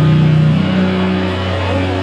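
Distorted electric guitar and bass holding sustained, droning notes through the amplifiers, the held pitch stepping up to a higher note about half a second in.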